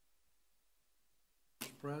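Near silence of faint room tone, then near the end a voice says "Present."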